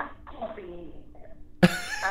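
A person's voice: a brief spoken sound at the start, then about one and a half seconds in a sudden, loud vocal burst, a short cough-like or laughing outburst, as talk resumes.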